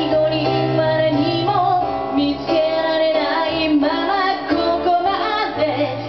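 A woman singing a Japanese pop ballad into a microphone, accompanied by electric keyboard with sustained chords and a bass line, played live.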